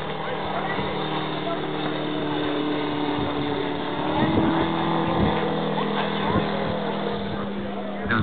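Large-scale radio-controlled model biplane's 250 cc radial engine droning steadily in flight, its pitch rising slightly about halfway through.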